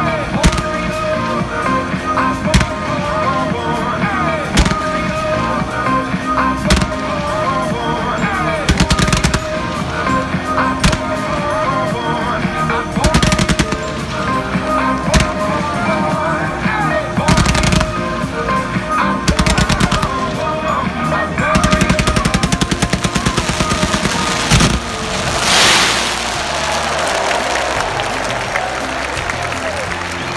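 Fireworks bursting overhead every couple of seconds, some shells breaking into fast crackling salvos, over music playing throughout. A long dense run of crackles comes in the last third, with a rushing hiss a few seconds before the end.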